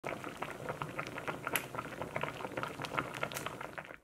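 Thick soybean paste stew bubbling hard in a Korean earthenware pot (ttukbaegi): a dense run of irregular wet pops and blips, fading out near the end.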